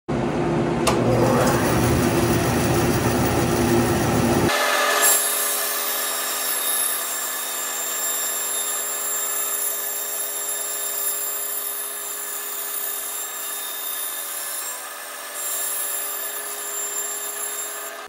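Laguna 14|12 bandsaw resawing a board on edge: the steady running of the saw with the blade cutting through the wood for the whole length of the board. The deepest part of the sound cuts out sharply about four and a half seconds in.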